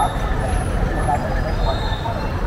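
Busy street ambience: steady low rumble of motor traffic with indistinct voices of people nearby.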